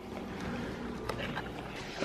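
Low steady rumble of handling noise on a handheld camera's microphone, with a faint click about a second in.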